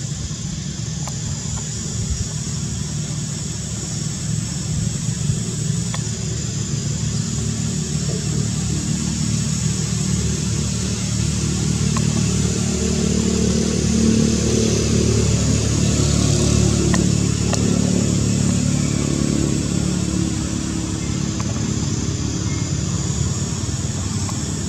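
A low motor engine running continuously, swelling louder around the middle and fading back somewhat toward the end.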